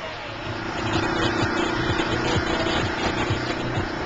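A steady droning hum that comes in a moment in and holds over noisy outdoor background sound, with a lower pulsing underneath.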